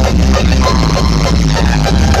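Loud hard electronic dance music (frenchcore) played live over a concert PA, with a heavy, constant bass and a driving beat.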